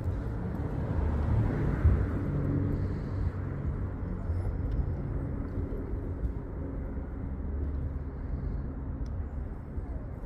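Steady low outdoor rumble of wind buffeting the microphone in strong wind, mixed with road traffic, with a faint low engine hum.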